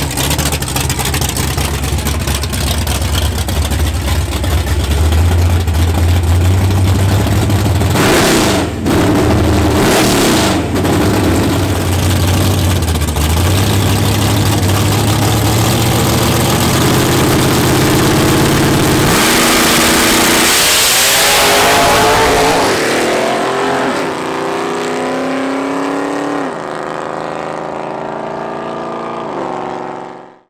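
A Fox-body Ford Mustang drag car's engine runs at the line, holding a steady rumble with a couple of brief blips, then launches about two-thirds of the way in with a loud rush of noise. It accelerates away, its pitch climbing and dropping back at each of several gear changes, growing fainter as it goes down the track.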